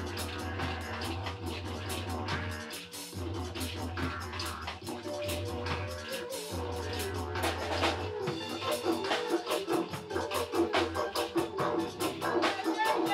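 Live band playing a dub-reggae groove built on a didgeridoo drone, with short breaks in the drone for breath about three and six seconds in. A hand shaker, electric guitar and drum kit play over it, and the music gets louder after about eight seconds.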